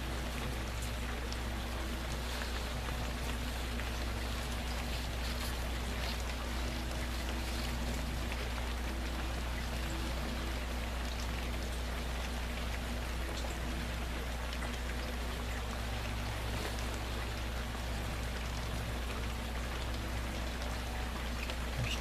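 Steady hiss of falling or running water with faint scattered ticks, over a low steady hum.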